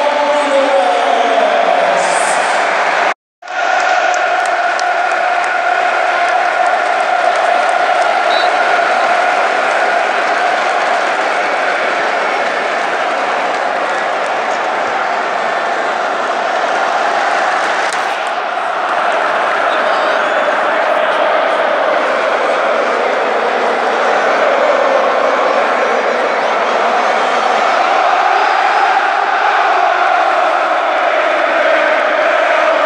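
Football stadium crowd chanting and singing together in a sustained massed chant. The sound cuts out completely for a moment about three seconds in.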